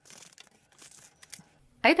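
Faint snipping and rustling of scissors cutting open a white plastic padded mailer. Speech begins near the end.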